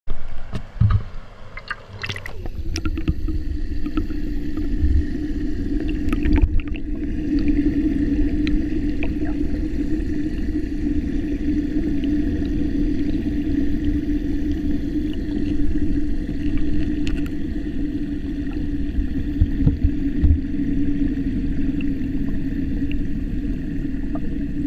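Splashing as the camera goes under the surface in the first two seconds, then a steady low rushing rumble of fast-flowing river water heard underwater. This is water being drawn through a hole that has opened beneath the weir. A few knocks sound over it.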